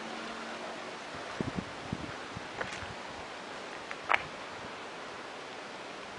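Steady outdoor background noise of a quiet courtyard street, broken by a few soft thumps about one and a half seconds in and short sharp clicks near the middle, the loudest about four seconds in.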